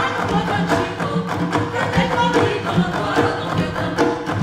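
Live stage music: hand-struck drums keep a steady, repeating beat under singing voices, in the samba rural paulista / batuque style that the show's music is built on.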